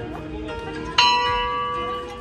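A bell-like chime struck once about a second in, ringing on in several steady tones that slowly fade.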